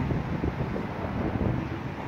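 Wind buffeting the microphone: an uneven low rumble with a faint hiss over it.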